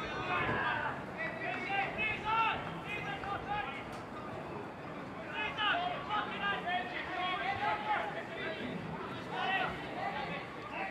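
Several voices calling and chattering at once around a football pitch, with no clear words: players and spectators talking during a pause in play.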